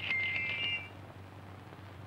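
Bright, bell-like metallic dings, each starting with a click, from a coin changer as coins are popped out of it; they stop about a second in, leaving a faint steady hum of the old soundtrack.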